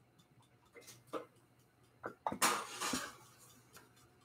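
Kitchenware being handled: a few light knocks, then a louder clatter about two and a half seconds in.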